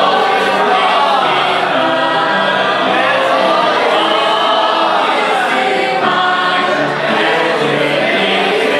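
A group singing a hymn together, led by a man's voice through a microphone, in long held notes.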